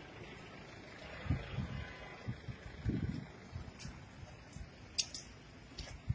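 Faint outdoor background with a run of low bumps and a few short sharp clicks, the handling noise of a phone being carried as it moves around the car.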